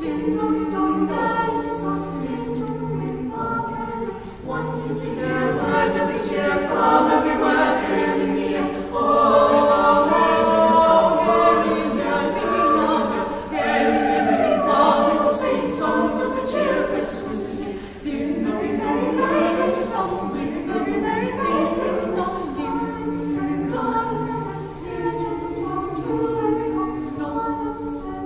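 Youth choir singing in several vocal parts, unaccompanied, with long held chords that grow louder through the middle and ease off briefly before swelling again.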